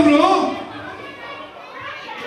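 Speech: a man's loud voice over a microphone, calling out and held for about half a second, then crowd chatter and children's voices echoing in a large hall.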